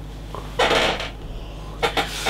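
A person exhaling a lungful of e-cigarette vapour: a short breathy whoosh about half a second in, followed by a brief sharp sound near the end.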